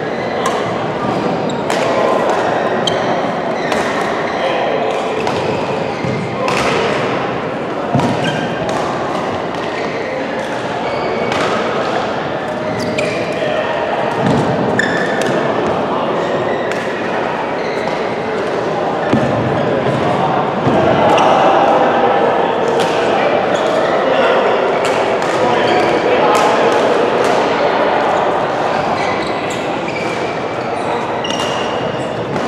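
Badminton racquets striking the shuttlecock in a doubles rally: sharp clicks every second or so, over the steady murmur of players' voices in a large hall. The voices grow louder about two-thirds of the way through.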